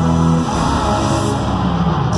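Live band music in an arena, heard from the crowd. A held low chord changes to a new one about half a second in.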